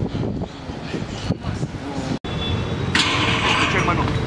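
Live street sound under BMX riding: passing cars and traffic with people's voices, broken by a brief dropout at an edit about halfway. Near the end a louder rushing scrape comes in.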